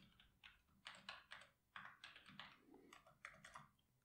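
Faint, irregular keystrokes on a computer keyboard while code is being typed.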